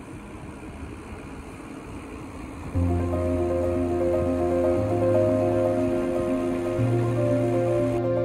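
A steady rushing noise, then about three seconds in, calm background music starts: slow sustained chords over a held bass note that moves to a new pitch about every two seconds.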